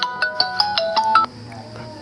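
A mobile phone ringtone: a quick tune of clear electronic notes stepping up and down in pitch, which cuts off a little over a second in.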